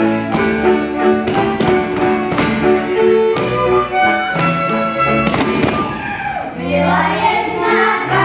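Live Moravian folk dance music with a quick, steady beat. About six seconds in the playing eases and children's voices take up a song over the accompaniment.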